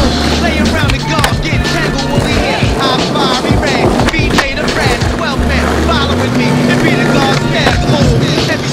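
Music with a deep bass line that slides up in pitch twice, mixed with the sound of skateboard wheels rolling on granite paving and the sharp clacks of the board during a trick.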